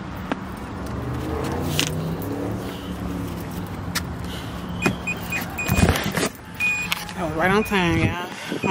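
A car's power liftgate motor running with a steady hum that rises briefly in pitch, then short high beeps and a solid thump as the gate shuts near the end.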